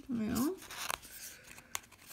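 Fingers scraping and clicking at the tab of a black plastic Make Up For Ever Matte Velvet Skin powder-foundation compact while trying to pry it open, with a couple of sharp clicks. A short hum of voice at the start.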